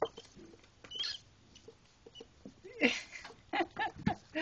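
Pet rats squeaking and scrabbling at a food canister as they fight to get in: scattered clicks and scratches of claws on the can, with several short squeaks, busiest in the last second and a half.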